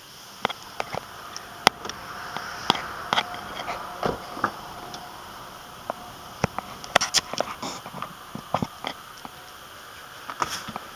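Scattered clicks, taps and rustles of a handheld phone being moved inside a car's cabin, from the front seat to the back, with one fuller knock about four seconds in and a quick run of clicks about seven seconds in, over a faint steady hiss.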